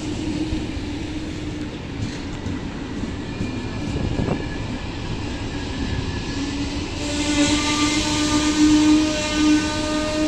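A ZSSK passenger train of double-deck coaches hauled by a class 263 electric locomotive rolls past with a steady rumble. About seven seconds in, the locomotive draws level and a steady whine of several pitches at once grows louder.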